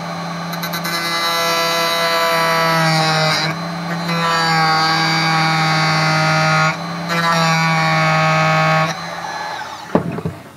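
Handheld rotary tool with a small grinding stone running at high speed, grinding a notch into the edge of a plastic enclosure so two cables can pass. It gives a steady high whine that dips briefly twice and stops about a second before the end.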